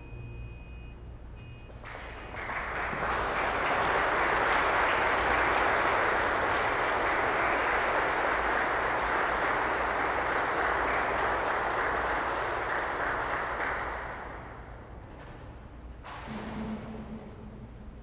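Audience applauding in a large, echoing cathedral after an organ piece. The last organ tones die away in the first second or so, the applause swells about two seconds in, holds steady, and fades out about fourteen seconds in.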